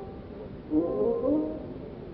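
Carnatic music on an old, narrow-band recording: an ornamented melodic phrase with sliding, wavering pitch (gamakas) rises in about 0.7 s in and fades by about 1.5 s. Steady hiss runs under it.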